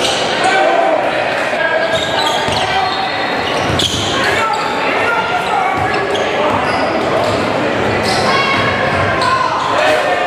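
Live sound of a basketball game in a gym: the ball bouncing, sneakers squeaking on the hardwood, and crowd and player voices echoing in the hall.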